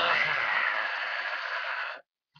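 A person's long, breathy hiss of breath, fading slightly and then cutting off suddenly.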